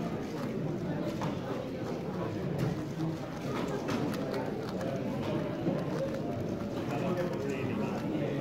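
X-Man Galaxy v2 Megaminx being turned fast in a speedsolve: frequent short plastic clicks and clacks from its turning faces, over steady chatter of many voices in the hall.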